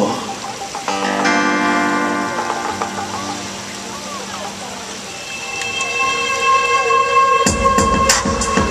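A live band begins a soul song. Sustained synthesizer chords swell and fade, a new held chord enters about five and a half seconds in, and the drum kit comes in with kick and snare hits near the end.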